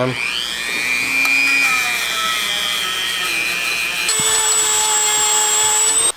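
Dremel rotary tool with a small carbon-steel wire brush whining at high speed as it scrubs grime out of an engine valve cover. It winds up at the start and its pitch shifts about four seconds in.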